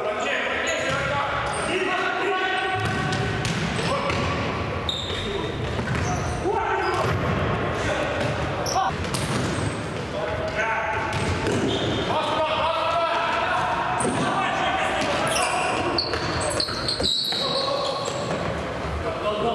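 Futsal players' voices calling and shouting in a large, echoing sports hall, mixed with the thuds of the ball being kicked and bounced on the hard floor.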